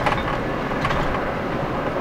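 Steady in-cabin road and engine noise of a Ford F-150 pickup's V8 driving on the highway under light throttle.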